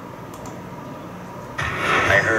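Steady low background hum, then about one and a half seconds in a film trailer's soundtrack starts abruptly and loudly, played back through a screen's speakers.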